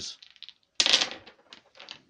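A handful of dice rolled onto a wooden tabletop. They clatter loudest about a second in, then rattle and click a few more times as they settle.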